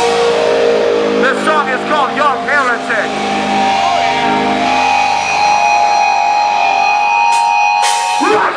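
Amplified electric guitars holding sustained, ringing notes through their amps, with a run of quick rising-and-falling pitch wobbles about a second in. A few sharp clicks come near the end.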